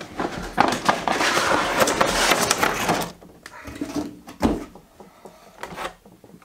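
Cardboard box and clear plastic packaging of a large vinyl Funko Pop being handled and opened: about three seconds of steady rustling and scraping, then quieter scattered knocks and clicks.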